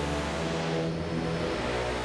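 Studio Electronics Boomstar 4075 analog synthesizer holding a sustained low droning tone through a Strymon BigSky reverb on its Studio setting, the note changing about a second in.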